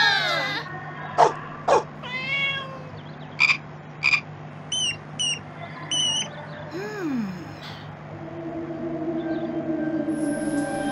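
A string of short animal sound effects from a children's course-book audio story, one after another: brief calls, clicks and chirps, and a falling cry about seven seconds in. A steady hum builds in the last two seconds.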